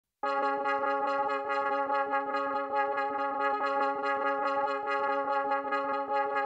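Instrumental song intro: one held, bright chord with a rapid, even flutter through it, starting a moment in.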